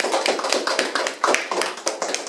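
A few people applauding after a recitation: a dense, steady patter of hand claps.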